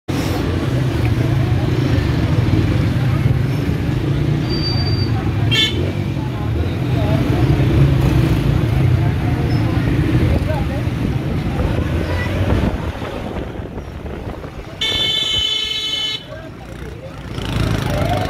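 Busy street noise of a crowded lane: vehicle engines rumbling and people's voices. There is a brief sharp sound about five and a half seconds in. Near the end a vehicle horn sounds for about a second and a half.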